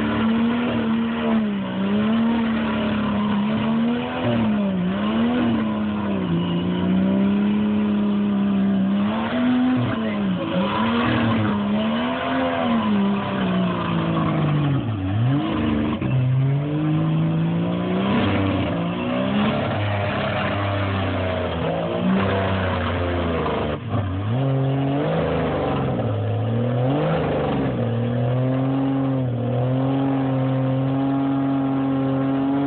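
Jeep Cherokee XJ mud-bog truck's engine revving hard through a mud pit, its pitch rising and falling again and again as the throttle is worked, dropping sharply twice, and holding a steadier high rev near the end.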